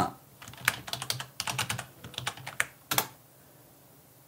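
Typing on a computer keyboard: a quick run of separate keystrokes for about two and a half seconds, ending with one harder stroke about three seconds in.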